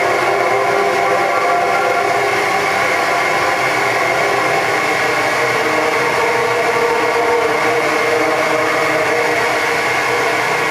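Live electronic ambient music: a dense synthesizer drone of many held tones over a steady hiss, its chord of tones shifting about halfway through.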